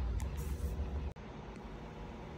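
Low steady background rumble that cuts off abruptly about a second in, leaving fainter room noise.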